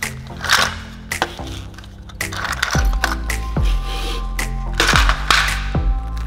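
Background music with deep, falling bass hits; over it, the clatter of small circuit-board modules shifting against each other in a clear plastic box.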